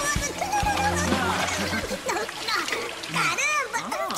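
Water splashing in a toilet bowl as a chipmunk is dunked, under a high-pitched, sped-up cartoon chipmunk voice crying out. Background music runs for the first couple of seconds.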